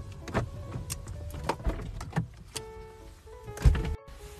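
Someone moving about in a car's driver's seat and getting out: clothing rustle with several light clicks and knocks, then a heavy thud near the end. Background music plays throughout.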